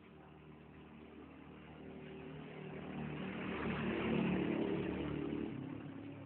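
A motor vehicle passing by, its engine sound growing louder to a peak about four seconds in, then fading.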